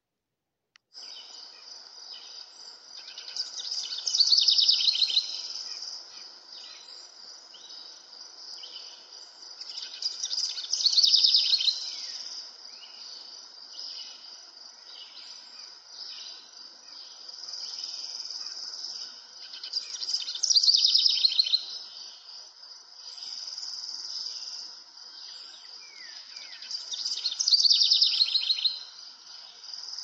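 Chirping animal calls. After about a second of silence, a steady high chirring runs under a loud, rapid trill that comes back about every seven seconds, four times in all.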